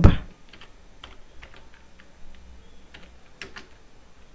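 Typing on a computer keyboard: a scattering of faint, irregular key clicks.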